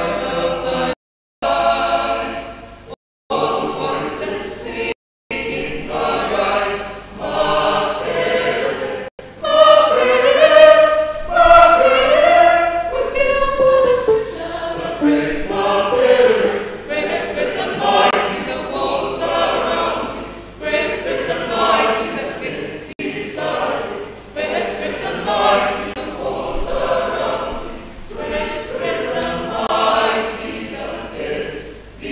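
Many voices singing an anthem together in chorus. The sound cuts out briefly three times in the first few seconds, and the singing grows fuller and louder from about nine seconds in.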